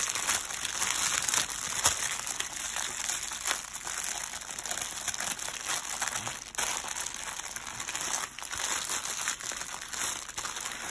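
Clear plastic crinkling and crackling as resealable baggies of diamond-painting drills are handled and slid over a canvas covered in plastic film, with irregular crackles throughout.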